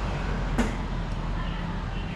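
Steady low rumble of street traffic in open air, with a single sharp click about half a second in.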